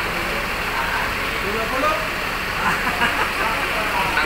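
Steady engine sound of an idling bus, with people's voices talking in the background.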